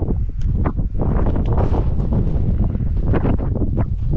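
Wind buffeting the microphone outdoors, a loud, uneven rumble.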